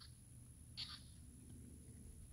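Near silence: faint outdoor background with a low rumble, and one brief, faint high-pitched sound about a second in.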